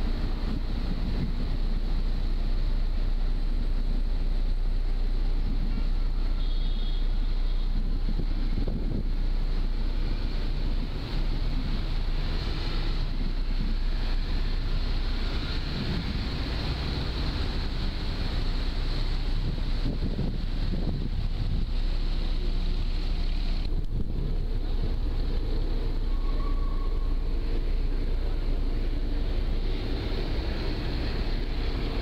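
A passenger ferry under way: the steady low rumble of its engines, with wind buffeting the microphone.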